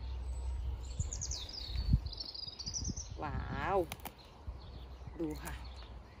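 A small songbird singing a quick trill, its notes falling and then rising in pitch, for about two seconds starting a second in.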